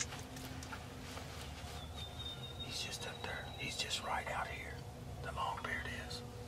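Hunters whispering in a few short, hushed bursts, over a faint steady hum.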